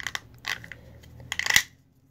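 Small objects being handled and rummaged through, giving a few light clicks and rattles, the loudest cluster about a second and a half in.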